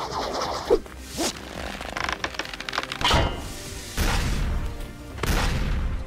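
Cartoon soundtrack: background music under a run of sudden crash- and scrape-like sound effects about once a second, with a short laugh about halfway through.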